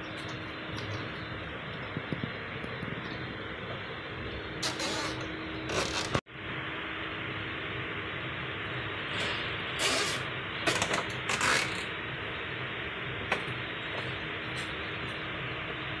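Plastic zip ties being pulled tight to fasten a metal mesh grille to a plastic bumper, heard as a few short ratcheting rasps and handling rattles over a steady low hum.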